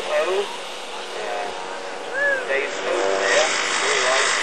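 Engine and propeller of a Mitchell A-10 ultralight running as the aircraft flies low past, growing louder near the end. A voice is heard in short snatches over it.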